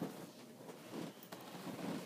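Faint rustling and handling noise, with a light click about a second and a quarter in.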